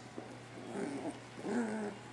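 Three-week-old puppies making faint little whines and growls as they crawl and play together: two short calls, one a little past halfway and another near the end.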